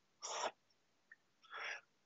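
Felt-tip marker writing on a whiteboard: two short scratchy strokes, one just after the start and one about a second and a half in.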